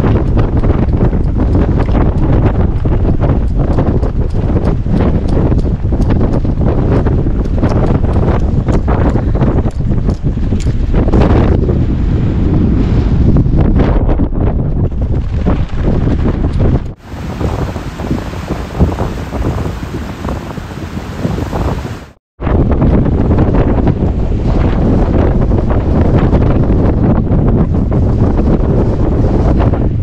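Strong, gusty storm wind buffeting the microphone. It drops out briefly twice, about 17 and 22 seconds in, and is a little quieter between those two points.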